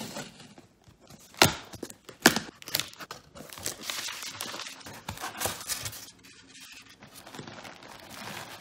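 A cardboard shipping box being opened and unpacked: tape slit and flaps pulled open, then paper packing rustled and crinkled. Two sharp snaps, about a second and a half and just over two seconds in, are the loudest sounds.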